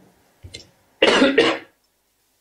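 A man's short cough in two quick bursts about a second in, after a faint tick.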